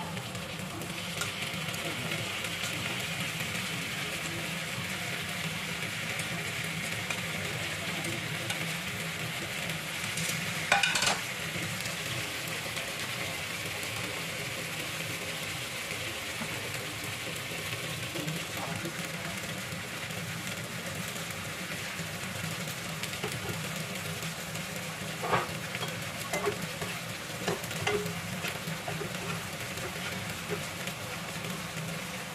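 Cod steaks and tomato halves frying in a pan, with a steady sizzle. A brief loud clatter comes about a third of the way in, and a few light taps come near the end.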